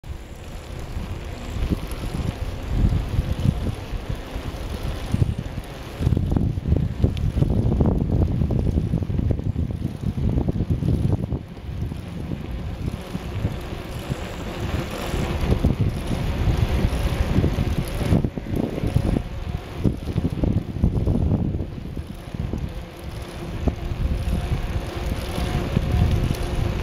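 Wind buffeting the microphone of a camera riding on a moving bicycle: a loud, gusty low rumble that rises and falls throughout.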